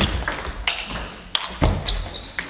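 Table tennis rally: the ball clicking sharply off the rackets and the table, five or so quick hits at uneven, fast intervals.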